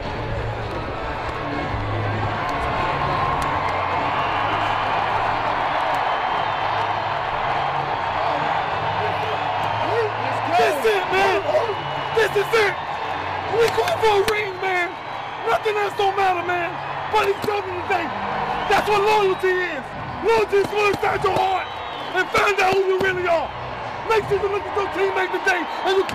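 Start of a hype-music track: a crowd-like noisy haze over low bass notes. From about ten seconds in, shouting male voices come in, broken up by sharp hits.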